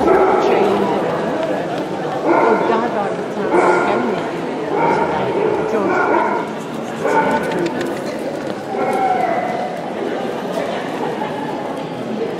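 A dog barking again and again, with a call about every second, over people talking in a large hall.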